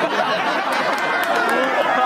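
Several voices talking at once: crowd chatter.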